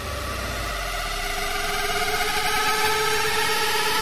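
A swelling whoosh of noise with a faint steady hum inside it, growing louder over the four seconds and cutting off abruptly at the end, typical of an edited transition sound effect over a whip pan.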